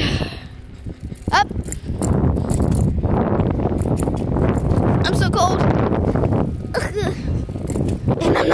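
Wind buffeting a phone's microphone while riding a bicycle: a steady low rumble that thickens about two seconds in, with a sigh at the start and a few short falling squeaks.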